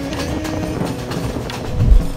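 A passenger train running along the track, its wheels clattering over the rails, with music under it and a deep low thump near the end.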